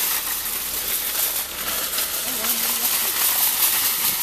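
Steady hissing rush of a shopping cart's wheels rolling fast over a gravel road while the cart is towed.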